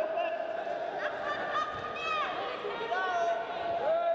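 Indistinct shouted calls from people around the wrestling mat, several held as long drawn-out notes, over a steady hall background.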